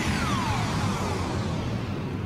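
Logo-sting sound effect: a dense rumble and hiss that slowly fades after a sudden start, crossed by whistle-like tones falling steeply in pitch.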